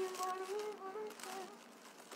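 A woman humming a tune: a long held note with a few small steps in pitch, which fades out about one and a half seconds in.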